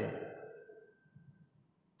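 A pause in a man's speech: the end of his last word fades out over about half a second, then near silence with only faint room tone.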